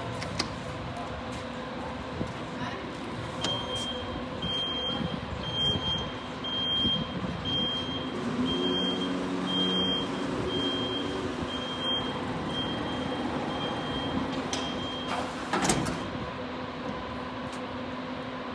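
Car elevator doors closing under power: a high warning beep repeats about once a second for some ten seconds while the door motor hums, and a knock comes near the end as the doors shut.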